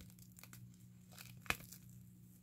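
Plastic wrapping being pulled off a jar candle: faint crinkling and crackling, with one sharper tick about one and a half seconds in.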